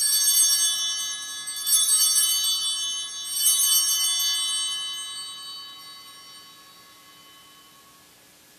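Altar bells (Sanctus bells) rung three times at the elevation of the chalice, about a second and a half apart. Each peal is a bright, high jangle of several bells together, and the last one fades away slowly.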